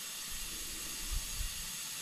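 Steady hiss of compressed air flowing through a cylinder leak-down tester into one cylinder of a Briggs and Stratton Intek V-twin held at top dead center and leaking out past it, at about 10% cylinder leakage, within the manufacturer's specification.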